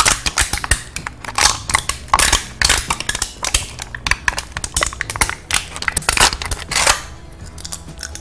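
A man biting and chewing on a piece of metal: a rapid, irregular run of sharp crunches and metallic clicks against his teeth, stopping near the end.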